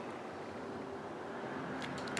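Quiet steady room hiss with a faint hum, while a clear acrylic stamp block is held pressed onto card stock; a couple of light ticks near the end as the block is handled and lifted.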